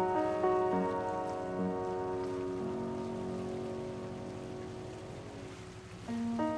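A ninety-year-old upright piano: a few notes struck in the first seconds, then a chord held and left to fade slowly, over a steady hiss.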